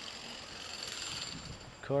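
Steady, quiet outdoor background noise, an even hiss with no distinct events.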